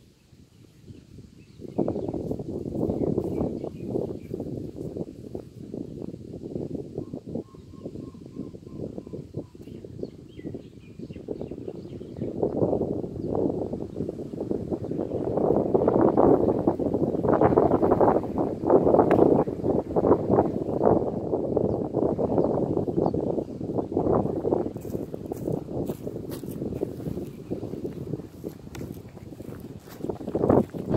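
Wind buffeting the microphone in gusts, starting about two seconds in and at its strongest in the middle.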